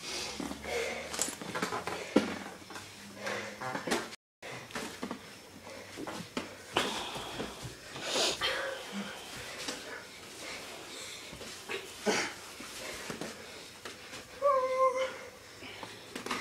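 Scuffling, shuffling feet and occasional bumps of people play-fighting on a garage floor, with faint voices. Near the end comes one short high-pitched vocal sound.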